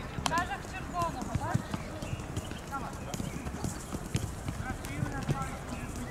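Footballs being touched and kicked on artificial turf: irregular knocks of the ball, with boys' voices calling and chattering among them.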